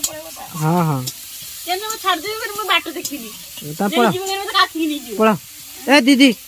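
Food sizzling as it fries in oil in a wok and is stirred with a long metal ladle, heard as a steady faint hiss under women's voices talking, which are louder.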